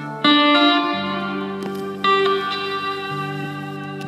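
Electric lap steel guitar played with a slide bar through a small amplifier: a chord struck about a quarter second in and another about two seconds in, each ringing on, with short slides in pitch.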